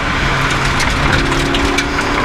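Rally car engine running hard at speed, heard from inside the cabin, under steady tyre and road noise from a wet road; a higher engine tone joins about a second in.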